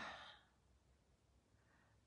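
A woman's short breathy exhale trails off the end of a drawn-out word and fades out within half a second, leaving near silence.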